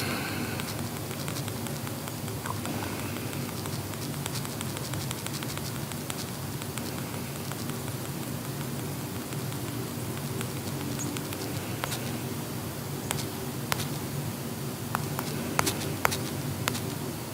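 Steady low hum and hiss of room background noise, with scattered light clicks and ticks that come more often near the end.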